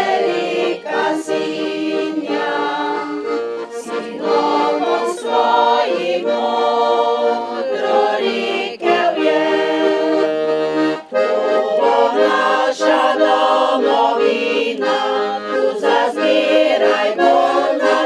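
Accordion playing a traditional tune while a women's choir sings.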